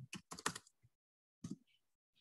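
Computer keyboard typing: a quick run of faint keystrokes in the first half-second, then a single keystroke about a second and a half in.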